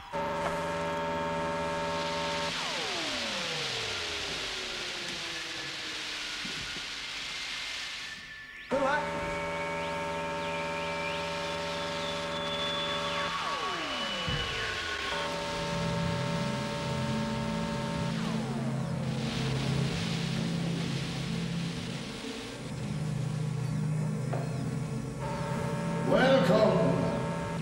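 Electronic science-fiction score and effects: sustained synthesizer chords with downward-sweeping tones and a hissing rush. It cuts out abruptly about eight seconds in, then starts again with further falling sweeps and lower held drones.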